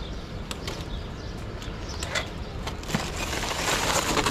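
A few light clicks and knocks, then the plastic wrap of a shrink-wrapped case of bottled water crinkling as a hand grips it, starting about three seconds in.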